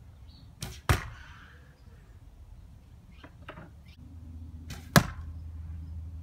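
Two shots from a 45 lb, 61-inch Indian recurve bow with cedar arrows, about four seconds apart. Each is a pair of sharp sounds: the string's release and, about a quarter second later, a louder smack as the arrow strikes a cardboard-box target.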